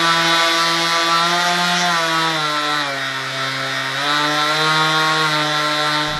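DeWalt 20V XR cordless random orbital sander running free in the hand, a steady motor hum with a clear pitch. About two seconds in, the pitch drops for over a second and then rises again as the speed setting is changed, and the motor cuts off at the very end.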